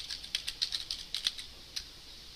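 Computer keyboard being typed: a quick run of key clicks, then a short gap and one more keystroke near the end.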